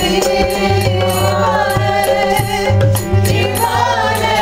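Live kirtan-style singing of a Bengali Vaishnava devotional bhajan, a lead voice with others joining, over regular light percussion strokes and low sustained tones.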